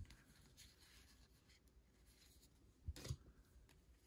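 Near silence, with faint sounds of trading cards being slid against each other in the hands: a tiny tick at the start and two short soft brushes close together about three seconds in.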